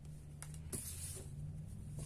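Faint handling noise of tarot cards: soft rustles and a couple of light clicks as cards are slid and laid on a table, over a low steady hum.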